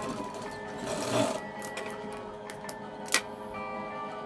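Background music over a JUKU industrial sewing machine running in a short burst about a second in, followed by a single sharp click near the end.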